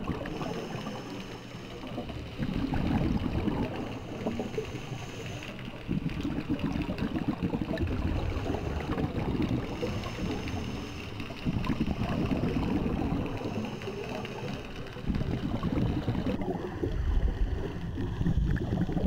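Scuba diver breathing through a regulator underwater: gurgling rushes of exhaled bubbles alternate with quieter stretches carrying a faint high hiss, repeating every few seconds.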